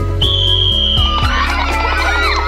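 A single whistle blast, one high steady note lasting about a second, that starts the race. Excited shouting breaks out as it ends, over background music with a steady beat.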